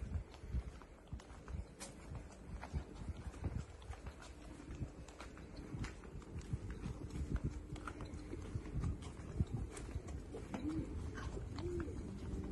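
Footsteps on a cobblestone street, with a pigeon cooing a few times near the end.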